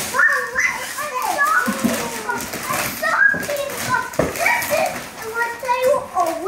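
Young children's excited, high-pitched voices and squeals, with wrapping paper rustling and tearing as a large gift is unwrapped.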